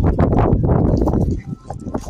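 Outdoor phone recording: men's voices under loud, rough rumbling noise on the microphone, easing off after about a second and a half.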